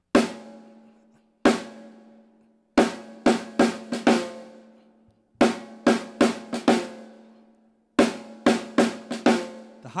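Snare drum played on its own, the snare part of a funk groove: loud accented strokes with softer ghost strokes between them, the pattern repeating about every two and a half seconds, the drum's ring carrying between hits.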